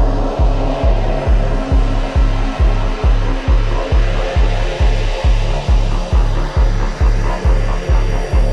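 Dark techno with a steady four-on-the-floor kick drum at about two beats a second, under held synth tones and a rough, noisy synth texture.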